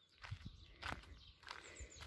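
Faint footsteps on a dirt path, a step about every half second.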